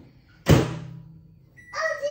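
A microwave door being shut, one solid thunk about half a second in with a short low ring after it. Near the end a young child gives a brief high-pitched call.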